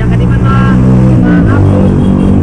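A motor vehicle engine running steadily, its pitch shifting about one and a half seconds in, with people's voices over it.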